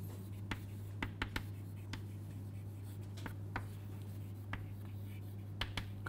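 Chalk writing on a chalkboard: a string of irregular short taps and scratches as the letters are stroked out, over a steady low hum.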